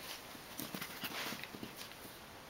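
Prague Ratter puppy play-fighting on carpet: scattered light scuffles and soft taps of small paws scrambling.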